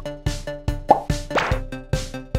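Light, bouncy background music with a steady beat of about four strokes a second, with two quick rising pitch sweeps, plop-like sound effects, about a second in.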